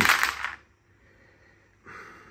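A handful of small plastic dice thrown into a wooden dice tray, clattering and rattling against the wood for about half a second, then settling and going quiet.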